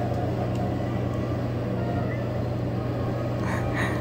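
A steady low hum with a constant background hiss, unchanging throughout.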